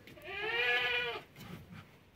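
A goat bleating once, a single call of about a second that rises and then falls in pitch.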